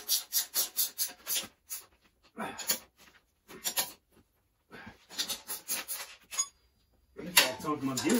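A spanner working bolts on a steel engine-mounting bracket, likely a ratchet spanner: quick rasping strokes of about five a second in bursts, with short pauses between.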